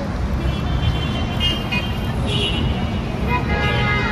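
Steady city traffic rumble in the open air, with voices in the background.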